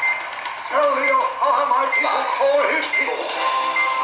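Cartoon soundtrack played back through computer speakers: background music with voices.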